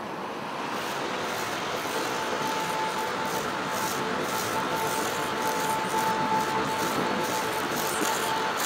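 A steady wash of noise that swells a little, with a sustained high tone coming in about two seconds in and holding.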